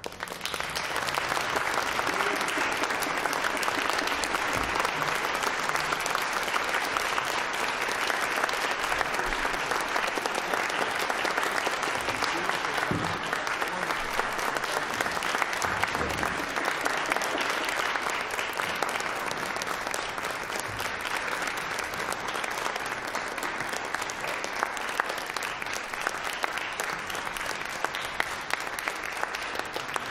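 An audience applauding. The applause breaks out all at once, goes on steadily and thins a little over the last several seconds.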